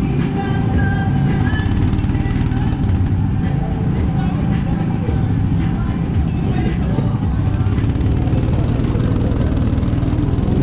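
Go-kart engine running steadily under way, heard close from a camera mounted on the kart, over a dense low rumble.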